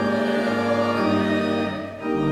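Church choir singing with organ accompaniment, one held phrase that breaks off for a breath near the end.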